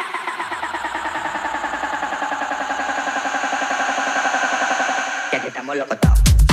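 Breakdown in a tech house DJ mix with the kick drum out. A rapidly stuttering, voice-like sample holds a chord that slowly falls in pitch. Near the end the full beat and kick drum come back in.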